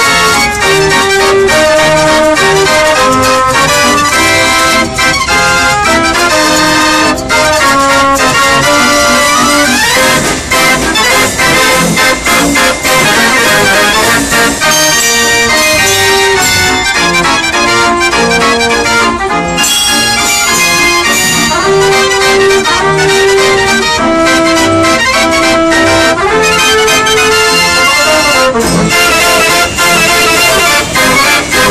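Verbeeck mechanical street organ playing a tune on its pipes, with a steady beat from its built-in drum and cymbal.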